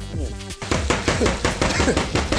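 A spatula scraping and knocking quickly against a frying pan while stirring strips of beef frying in it, with background music underneath. The clicks start about half a second in.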